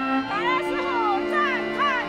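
Live ensemble music: sustained string chords, joined about a third of a second in by a high melody line that slides and wavers between notes.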